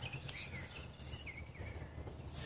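Faint woodland ambience: a steady high insect drone with a few short, high chirps scattered through it.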